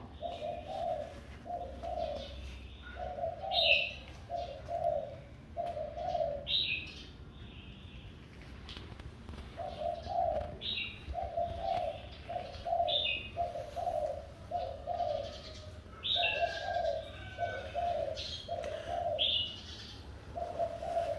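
A dove cooing in a steady run of low, evenly spaced notes, about one a second, with a break of a few seconds partway through. Small birds chirp now and then over it.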